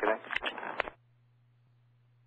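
The tail of an air traffic control radio transmission: a short spoken 'okay' with a few sharp clicks, cut off about a second in. After that comes only a faint, low, steady hum on the open frequency.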